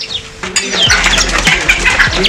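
Birds chirping and calling in a busy chatter of short, sweeping notes, beginning about half a second in, over a low steady rumble.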